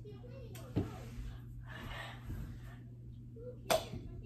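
A plastic practice golf ball tossed at a plastic cup on carpet: a sharp light knock about a second in, then a louder sharp knock near the end as the ball strikes the cup and tips it over.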